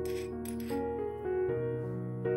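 Soft piano background music, with two short clinks in the first second as minced garlic is added, like a utensil or dish knocking against a glass mixing bowl.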